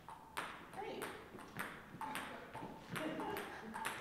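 A ping-pong ball tapped on a paddle at an even pace, about two taps a second, each a short, sharp click.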